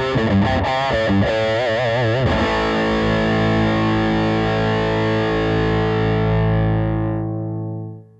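Electric guitar played through a Mesa/Boogie Throttle Box high-gain distortion pedal: a quick lead run with vibrato, then a held note that sustains and fades away near the end.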